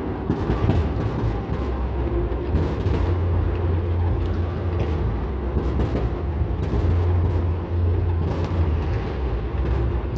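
Fireworks bursting across the city, heard from far off: a continuous low rumble of many overlapping explosions, with sharper bangs and crackles every second or so.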